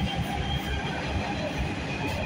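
New York City subway train running, heard from inside the car: a steady low rumble of the train in motion.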